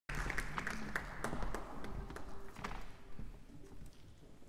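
Audience applause in a concert hall dying away over about three seconds, thinning to a few scattered claps.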